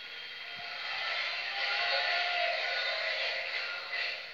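Television programme audio heard off the set's speaker: a dense wash of sound with music in it, swelling to its loudest about two seconds in and then easing off.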